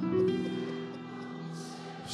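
Stage keyboard playing slow, held chords in a soft choir-like pad sound; the chord changes at the start and the sound fades somewhat towards the end.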